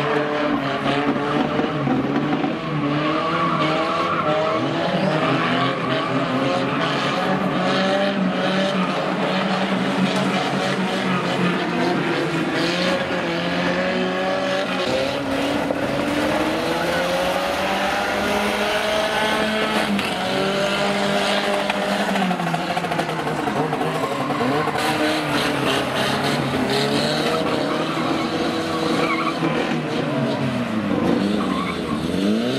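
Several banger race cars' engines revving, their pitch rising and falling, with tyres skidding on the loose track and scattered sharp knocks of metal contact.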